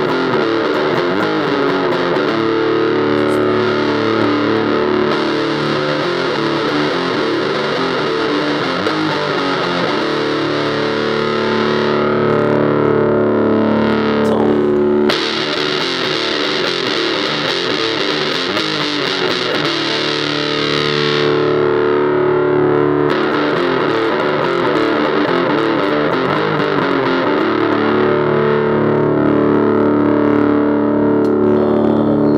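Electric guitar played through an Electro-Harmonix Bass Big Muff Pi fuzz pedal with its bass-boost switch engaged: thick, sustained fuzz chords, each held for several seconds before the next.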